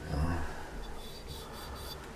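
Faint rustling and rubbing of small plastic zip bags of crossbow parts being handled on carpet, with a soft low thump just after the start.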